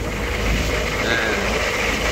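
A boat's engine running steadily under way: a low drone with a steady noisy hiss over it.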